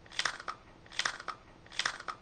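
A crisp snack chip crunching as it is bitten and chewed with the mouth close to the microphone, the crunches coming in pairs a little under a second apart.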